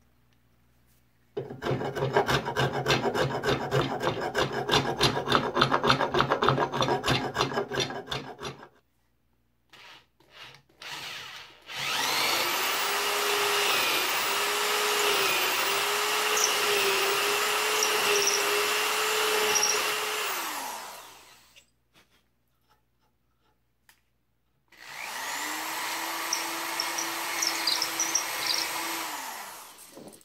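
Spokeshave cutting rapid, repeated scraping strokes across a mahogany walking-stick handle held in a vise. Then a cordless drill runs twice with a steady whine, boring a 3/8-inch hole into the handle for a threaded rod; the second run is shorter and lower-pitched.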